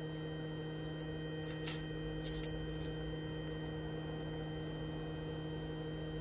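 Steady low hum of the powered-on laser engraver, with a short metallic clink about two seconds in.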